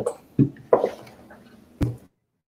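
A few brief, faint fragments of a person's voice, then a sharp click near the end, after which the sound cuts out completely.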